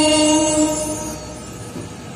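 A held chord on a keyboard organ at the close of a sung devotional line, steady and then fading away over about a second.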